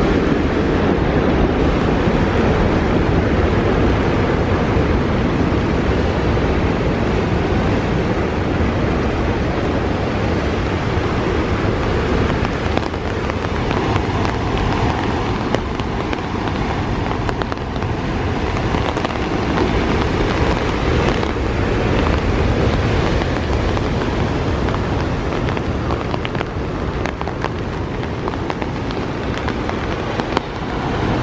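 Steady rushing noise of heavy rain and wind, with wind rumbling on the microphone.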